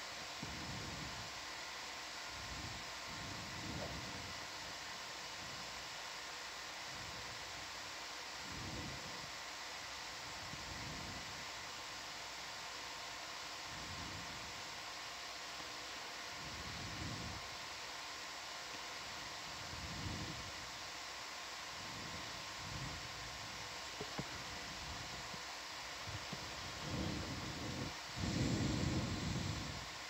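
Steady hiss with a faint electrical hum from an open audio line, with soft low thuds or puffs every few seconds, the strongest near the end.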